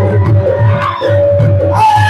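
Live ghazal music: a harmonium holds a long steady note over a quick, even drum beat of about four beats a second.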